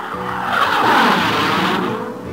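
A whoosh transition sound effect that swells up and fades away over about two seconds, with a few sustained music tones near the start.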